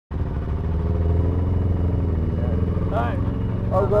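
Honda CBR125R's single-cylinder four-stroke engine idling steadily.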